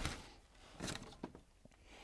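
A few faint, brief rustles and soft taps as harvested bulbous leek plants, roots and leaves, are handled and set down on plastic trays.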